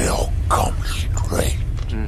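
A man's whispered, breathy voice speaking in short unintelligible bursts, over a steady low rumble.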